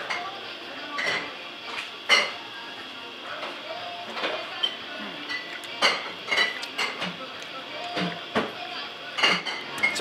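Tableware clatter: scattered clinks and knocks of plates and dishes, a few sharper ones near the middle and end, over a steady background hum of voices.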